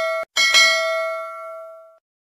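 Notification-bell sound effect on a subscribe-button animation: a bright, many-toned bell chime. It cuts off abruptly about a quarter second in, then rings again with two quick strikes and fades away over about a second and a half.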